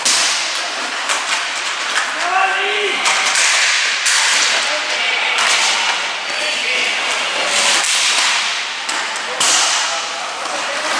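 Inline hockey play: skate wheels rolling on the rink floor under a steady hiss, with repeated sharp clacks and knocks of sticks and puck. Players shout, most plainly about two seconds in.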